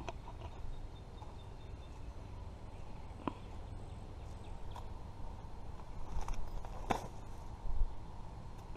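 Footsteps on leaf-strewn dirt while walking, over a steady low rumble, with a few sharp clicks and thumps.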